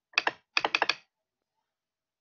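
Computer keys tapped: two sharp clicks, then a quick run of four, all within about the first second.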